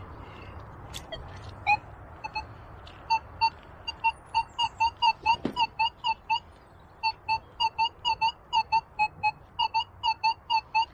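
A Minelab Multi-IQ metal detector sounding a string of short, same-pitched target beeps, about three a second, as its coil passes back and forth over buried metal that reads 88 on the display. There is a single thud about halfway through.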